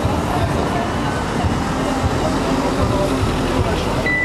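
Steady, even rushing outdoor noise with a low rumble, and indistinct voices of people talking in the background.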